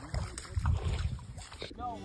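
Low, uneven rumble of wind on the microphone with a few brief muffled voice sounds, cut off near the end by background music with steady held notes.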